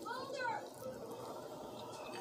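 A short high-pitched vocal sound, rising then falling in pitch over about half a second. After it comes quiet room tone.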